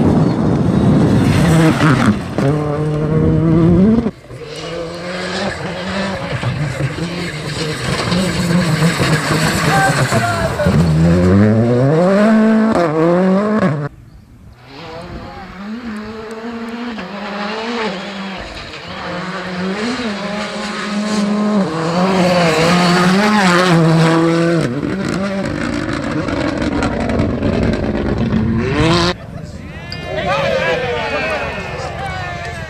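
Rally cars at full speed on a loose gravel stage, one after another in separate shots: engines revving hard, pitch climbing and dropping through gear changes and lifts. The sound breaks off abruptly between cars.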